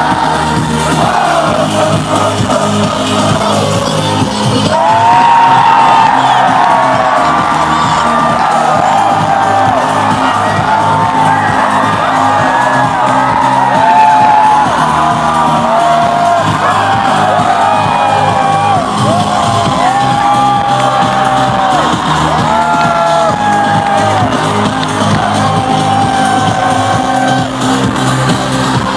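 Loud pop dance music over an arena sound system, with the crowd shouting and whooping along. From about five seconds in it gets a little louder and many high voices rise and fall over the beat.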